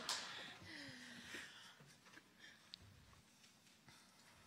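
A laugh and a few words trail off in the first second, then near silence: room tone with a few faint clicks.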